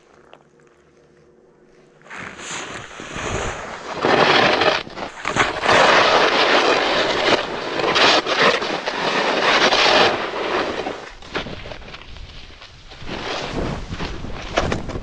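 Snowboard sliding and carving through deep snow, a broad scraping rush mixed with air noise on the camera. Fairly quiet for the first two seconds, it builds as the board gets moving, is loudest from about four to ten seconds in, eases off briefly and picks up again near the end.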